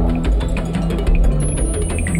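Documentary background music: a low sustained tone under rapid, even ticking percussion, with a faint high tone sliding downward near the end.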